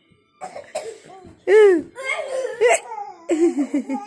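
Laughter from a child and an adult, in short choppy bursts, with a loud high-pitched cry about one and a half seconds in.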